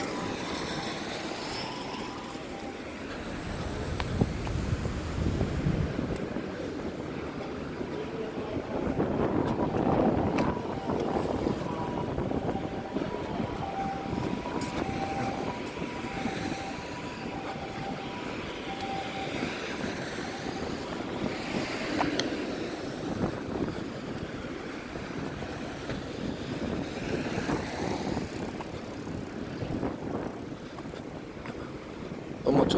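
Road traffic: cars passing along the road, their tyre and engine noise swelling and fading several times over a steady background hum.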